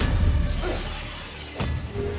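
Film fight sound effects: a shattering crash with debris dying away over low rumble and score music, then a sharp hit about one and a half seconds in as the energy blade is swung.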